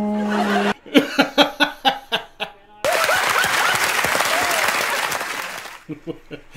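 A man's voice holds a steady whirring hum, imitating a machine, which breaks off under a second in. Bursts of laughter follow, then from about three seconds in a studio audience laughs and applauds, fading near the end.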